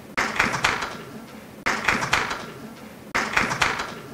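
A short burst of sharp claps, starting suddenly and fading, repeated as an identical loop about every one and a half seconds, about three times.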